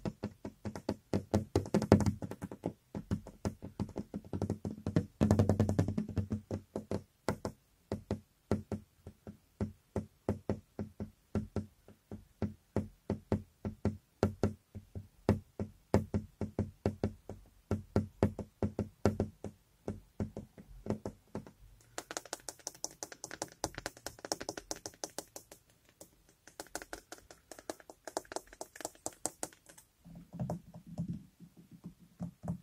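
Fingers tapping quickly on a window pane, several light taps a second. Near the end the strokes turn denser and hissier for a few seconds.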